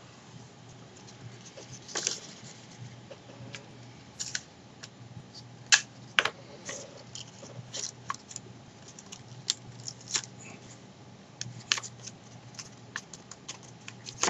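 Paper being handled at close range: irregular small crackles and taps as the folded, taped paper model is pressed and turned in the hands.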